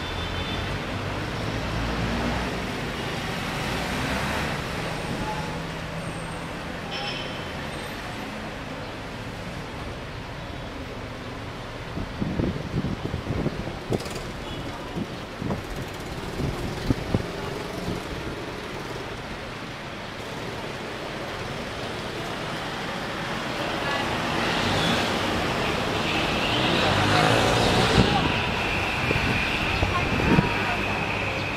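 Busy city street ambience: traffic running with the chatter of passers-by mixed in, scattered knocks midway, and a swell of louder traffic noise near the end.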